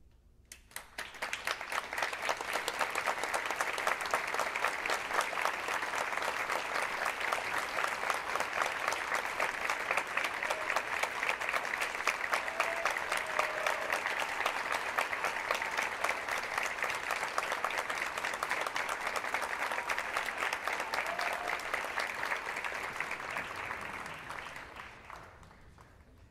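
Audience applauding, starting about a second in, holding steady, then dying away near the end.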